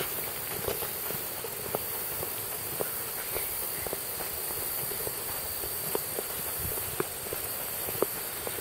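Footsteps of someone walking at an easy pace, soft steps about two a second over a steady background hiss.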